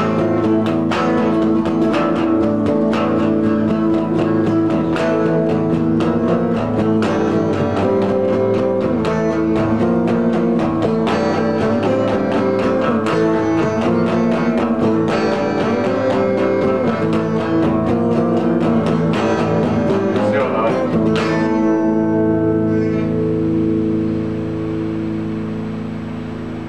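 Two electric guitars played together in a fast, noisy rock instrumental with dense strumming. About three quarters of the way through, the playing stops on a final chord that is left ringing and slowly fading.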